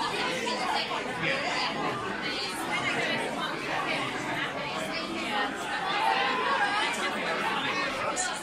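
Crowd chatter: many people talking at once in a crowded room, their overlapping conversations blending into a steady babble.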